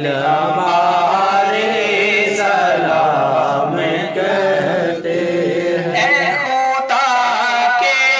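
Men singing a naat as a slow, unaccompanied devotional chant. The lead voice comes through a small portable voice amplifier fed by a headset microphone, and other male voices join in.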